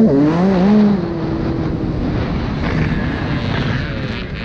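Motocross bike engine revving hard, its pitch wavering up and down for about the first second, then settling to a steadier, lower note over a constant rush of wind and track noise.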